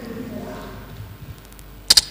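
Two sharp clicks close together near the end, over a low steady hum of room tone.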